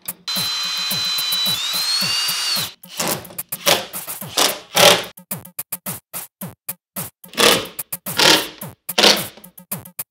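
Cordless drill running for about two seconds near the start, its whine stepping up in pitch partway through, over background electronic music with a drum-machine beat.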